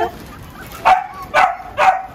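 A Miniature Pinscher barking three times, short sharp barks about half a second apart.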